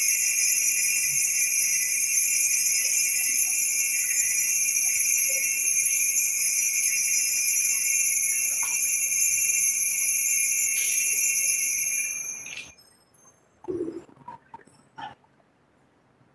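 Small bells ringing continuously in a steady high jingle, cutting off abruptly about twelve and a half seconds in. A few faint knocks follow.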